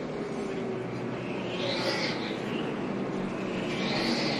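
NASCAR race trucks' V8 engines passing on the track, heard from trackside. One passes about halfway through and another near the end, each rising then falling in pitch as it goes by.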